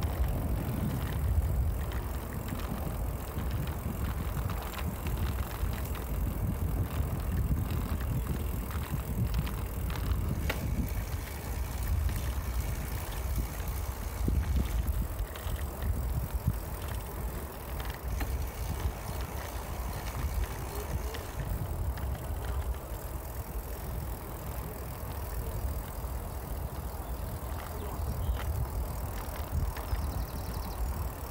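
Steady low rumble of wind on the microphone, mixed with tyre noise from a bicycle rolling along a tarmac path.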